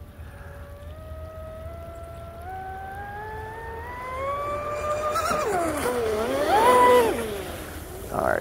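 Brushless electric motor of a fast RC speedboat whining as the boat accelerates, the pitch climbing steadily for about five seconds. The pitch then wavers, dips and rises again as the boat passes closest, loudest about seven seconds in, while the hull gets a little rocky at top speed.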